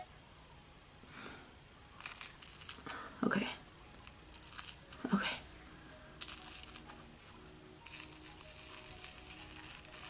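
Dried black peel-off face mask being pulled away from the skin in several short tearing, crackling pulls, with soft vocal sounds in between; it sounds bad.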